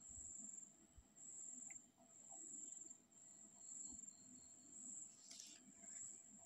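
Near silence: room tone with a faint, high-pitched trill that repeats in stretches about a second long with short gaps between them.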